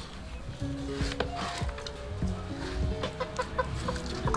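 Chickens clucking, a scatter of short calls at shifting pitches.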